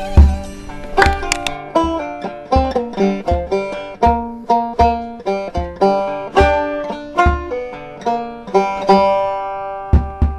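Five-string banjo picking a fast country-bluegrass tune, a steady run of bright plucked notes with a low thump under them about every beat.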